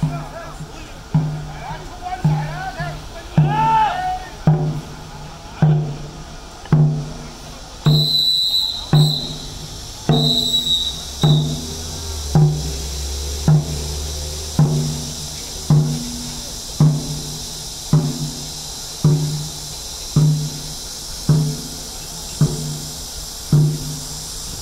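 Dragon boat drum beaten in a slow, steady rhythm, a little under one stroke a second, setting the paddlers' stroke.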